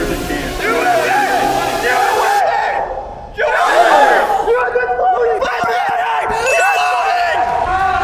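Several young men shouting and yelling excitedly over one another, with a short lull about three seconds in.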